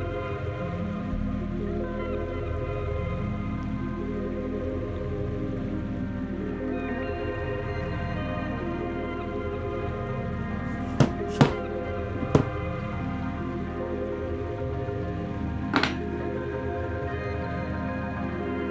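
Slow background music of sustained chords. Over it, four sharp knocks, three in quick succession past the middle and one more near the end: a mallet striking a leather pricking iron through the leather.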